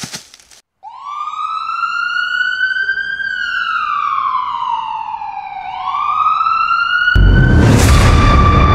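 A siren wailing: it starts about a second in, rises, falls slowly, and begins rising again. About seven seconds in, a loud boom and music come in over it.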